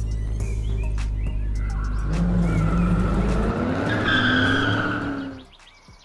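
A car pulling up: a low engine rumble, then a tyre squeal that starts about two seconds in, swells, and cuts off about a second before the end.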